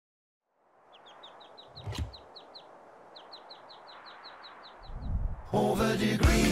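A bird's fast run of short high chirps, about six a second, over a soft hiss, as the ambient opening of a song, with a single thump about two seconds in. Full band music comes in near the end.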